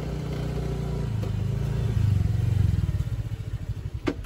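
Automatic motor scooter riding up and pulling to a stop, its engine growing louder toward the middle, then easing off near the end.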